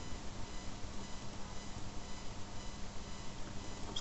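Faint steady hiss with a few thin, steady hum tones: the background noise of a desk microphone and computer.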